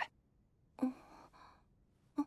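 A short, soft breathy sigh from a character, about a second in, between otherwise quiet moments.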